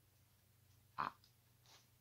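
Near silence, broken about a second in by one brief nasal sound from a person.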